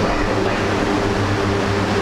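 Steady low hum with an even hiss: constant background machine noise in the room.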